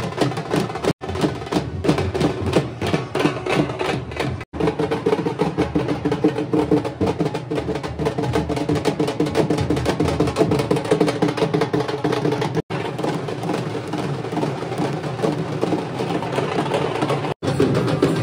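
Processional band music: fast, dense drumming under held brass-like tones. It drops out suddenly and briefly four times.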